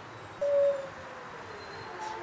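An animal gives one short loud call about half a second in, falling a little in pitch, then a fainter drawn-out call that slides lower.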